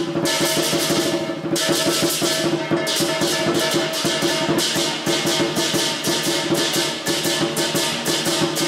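Dragon dance percussion: a drum beating a fast, driving rhythm with crashing cymbals over it.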